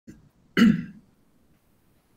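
A person clearing their throat once, a short, sharp burst about half a second in, heard over a video-call microphone.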